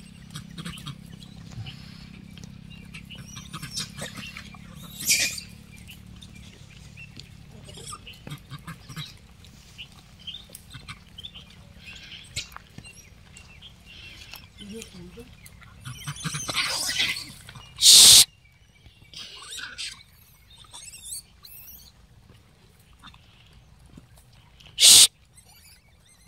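A troop of gray langurs feeding on fruit on dry ground: scattered rustling and small clicks with faint high squeaks. Two brief loud bursts stand out, one a little past the middle and one near the end.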